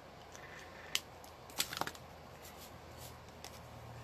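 Light plastic clicks and taps as an alcohol marker is capped and craft tools are handled: one sharp click about a second in, then a quick rattle of clicks half a second later, with a few fainter taps after.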